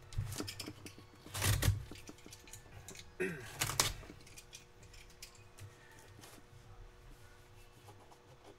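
A sealed cardboard case being turned and set down on a table: scrapes and dull knocks come in three bursts during the first four seconds, then only faint small handling sounds.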